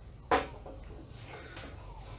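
A single short knock as the soldering iron's black plastic tip-protector cap is set down upright on the workbench.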